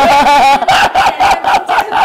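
A man's loud, high-pitched laughter. It begins as one drawn-out cackle and breaks, partway through, into rapid bursts of 'ha' about six a second.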